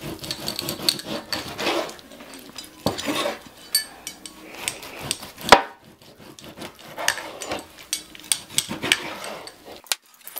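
Chef's knife cutting a raw beef roast into pieces on a plastic cutting board: irregular scrapes and knocks of the blade on the board. One sharp knock about halfway through is the loudest.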